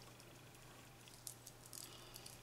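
Near silence: room tone with a faint steady low hum, and a couple of faint light ticks from hands handling thread and paper during hand stitching.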